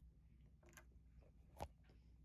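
Near silence, with one sharp click about one and a half seconds in.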